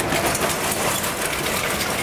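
Low-grade lump charcoal, small pieces mixed with dust, pouring from its bag onto a steel grill bed: a dense, continuous rattling clatter of many small pieces.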